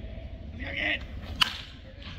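A baseball bat striking a pitched ball: one sharp crack about a second and a half in.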